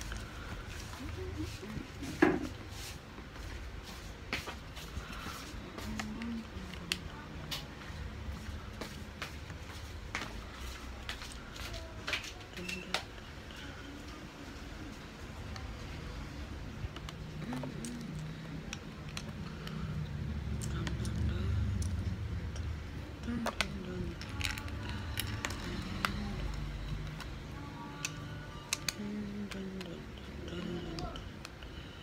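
Small plastic building bricks being handled and pressed together, with many small irregular clicks as pieces are picked out and snapped on, and one louder knock about two seconds in. A low background voice murmurs underneath.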